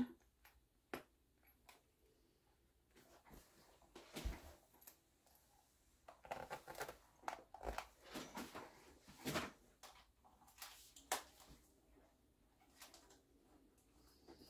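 Faint handling sounds of a clothes iron pressing on quilted cotton fabric and being lifted away: soft rustles, scattered small clicks and a couple of low thumps.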